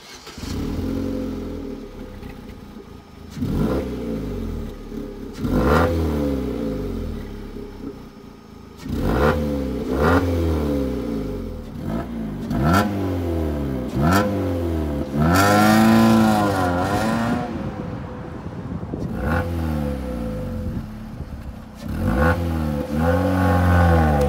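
Vauxhall Astra H 1.6 four-cylinder petrol engine idling and revved in a series of quick throttle blips, one held longer and higher near the middle, heard at the tailpipe. The exhaust's middle silencer box has been replaced by a straight Hoffmann race pipe.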